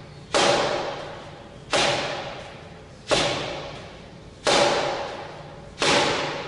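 Forearm blows on a wall-mounted "Kamerton" makiwara during forearm conditioning: five heavy strikes about 1.4 seconds apart. Each is a sharp thud followed by a ringing that fades over about a second.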